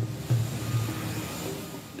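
Steady hiss of a jet airliner's engines, with background music's low notes underneath.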